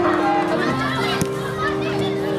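Children's voices shouting and calling out over background music with held notes that step from pitch to pitch.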